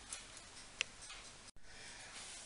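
Quiet room tone with one short, sharp click a little under a second in and a fainter one near the start. The sound cuts out completely for an instant about three-quarters of the way through.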